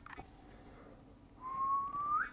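A person whistling one held note that drifts slightly higher and ends in a quick upward slide, starting about one and a half seconds in.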